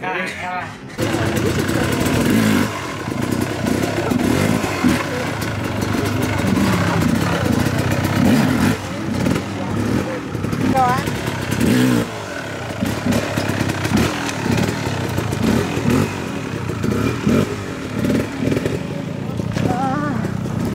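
Dirt bike engine running and revving, starting abruptly about a second in, with voices over it.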